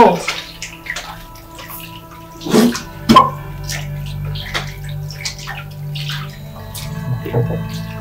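Water running and splashing in a sink as a man rinses out his mouth after tasting oversalted soup, under a steady background music score.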